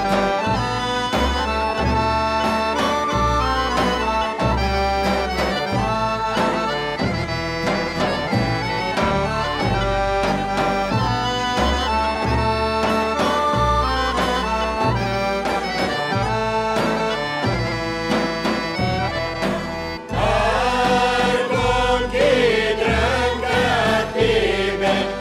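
Balkan folk band playing an instrumental tune on accordion, end-blown flute and a large bass drum keeping a steady beat. About twenty seconds in, a singing voice comes in over the band.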